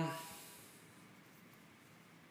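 The end of a man's spoken word fading out in the first half-second, then near silence with faint room hiss; the screwing-down of the watch crown makes no sound that stands out.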